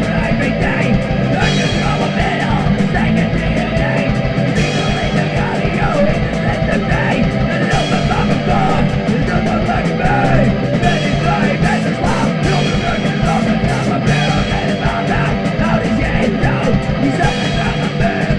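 Dutch hardcore punk band recording playing a loud, steady, guitar-driven passage over fast drumming.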